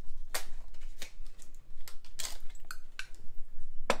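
A metal spoon scraping and clinking against a glass jam jar as jam is scooped out, in several short scrapes with a sharp clink near the end.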